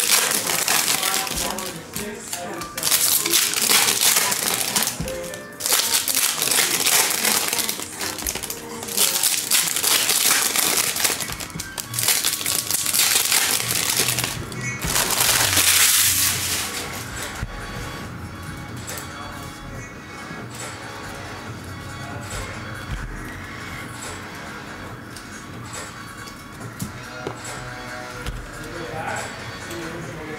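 Foil trading-card pack wrappers crinkling and tearing as packs are ripped open, in a series of loud bursts over the first dozen or so seconds. The wrappers fall quiet well before the end, leaving faint background music and voices.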